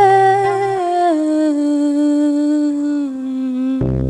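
A woman's voice holding one long sung note that sinks slowly, step by step, in pitch, over a low double bass note that stops about a second in. Near the end, acoustic guitar and double bass come in with plucked notes.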